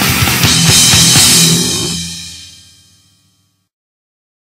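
Punk rock band with distorted guitars and drums playing a song's final bars, with a cymbal crash about half a second in. The last chord rings out and fades away to silence by about three seconds in.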